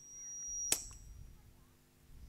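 A man's faint breath at a close microphone during a pause in speech, with one sharp mouth click about two-thirds of a second in, over a faint steady hum from the sound system.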